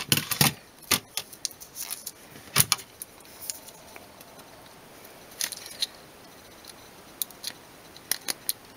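Scattered light clicks and taps of hands handling the opened plastic-and-metal tablet housing and its new battery: a quick cluster at the start, then single clicks spaced a few seconds apart.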